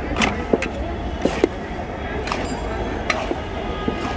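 Sharp metallic clinks and taps of metal spatulas against an iron kadai, several spread irregularly through the moment, over a steady hum of street traffic and voices.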